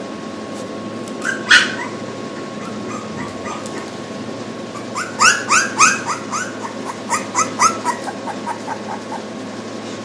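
Three-week-old English bulldog puppy whimpering and squealing: one cry about a second and a half in, then a quick run of short, rising squeaks from about halfway, growing shorter and fainter toward the end.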